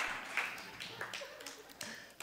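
Faint audience laughter and murmuring in a lecture hall dying away after a joke, with a few soft taps.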